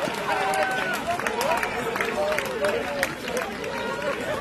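Several men shouting and calling out to each other on an outdoor football pitch, their calls overlapping, with scattered short sharp knocks among them.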